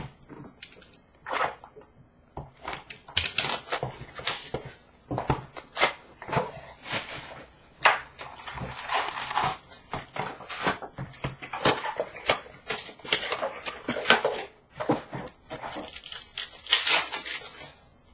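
Foil trading-card pack wrappers crinkling and being torn open, with cards handled and riffled: an irregular run of crackles and rustles.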